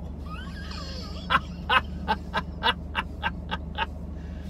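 A man laughing under his breath: a run of about ten short, breathy chuckles in the second half, coming a little faster toward the end.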